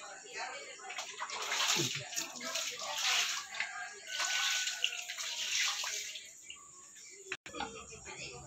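Running water splashing, in two spells of a couple of seconds each, with faint voices behind it.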